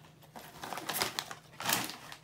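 Small crackling clicks, then a louder crinkle of a foil snack bag of Doritos being picked up and handled near the end.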